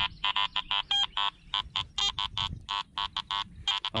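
Garrett AT-series metal detector sounding a rapid string of short beeps, about six a second, as its coil sweeps over ground full of iron targets: iron chatter.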